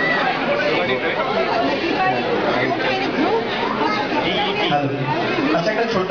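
Many people talking at once in a large hall: steady crowd chatter, with no one voice standing out.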